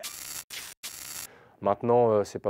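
A man's voice: a few short breathy bursts of hiss, then a voiced sound that rises in pitch near the end.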